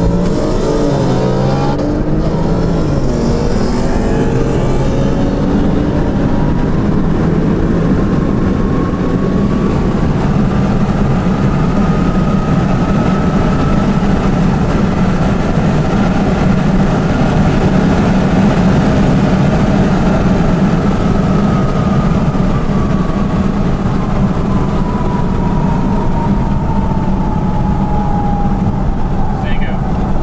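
Sports car engine and road noise heard from inside the cabin on a hard acceleration run. The revs climb in quick steps through the first couple of seconds, then settle into a loud, steady high-speed drone, with a whine that rises slowly to a peak about halfway through and falls away toward the end as the car slows.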